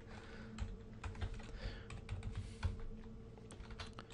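Typing on a computer keyboard: irregular, fairly quiet key clicks as code is entered, over a faint steady hum.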